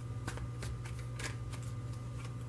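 Tarot cards being handled and shuffled by hand: a run of short, irregular card clicks and flicks, several a second, over a steady low hum.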